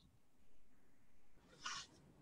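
Near silence: room tone, with one brief faint hiss about one and a half seconds in.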